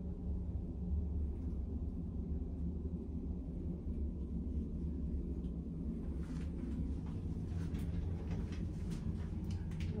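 Steady low rumble and hum of a cruise ship under way at sea, heard inside a small cabin bathroom, with a few faint ticks in the second half.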